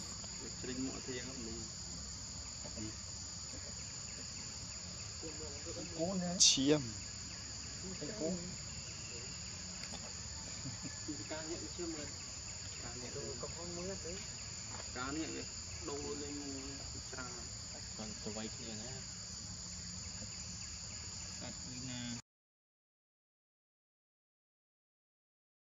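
A steady, high-pitched insect chorus drones throughout, with scattered faint short calls or voices and one louder brief sound about six seconds in; the sound cuts off suddenly near the end.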